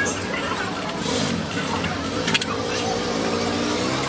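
People talking over a steady low background hum, with a brief hiss just after a second in and a sharp click a little past halfway.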